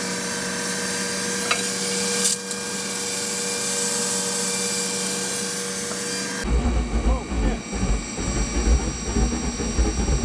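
Oil-burner spray nozzle atomizing liquid fuel under pump pressure: a steady hissing spray with a steady motor hum under it. A little past six seconds it gives way abruptly to a low, uneven rumble as the radiant tube burner rig runs.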